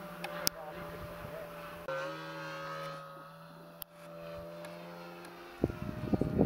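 Radio-controlled model airplane's motor and propeller droning steadily overhead at an even pitch. The drone jumps in pitch and level about two seconds in, and a run of loud bumps and rustles near the end covers it.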